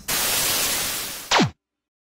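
Edited-in static sound effect: a loud hiss of white-noise static, ending in a short, steeply falling tone about a second and a half in that cuts off suddenly.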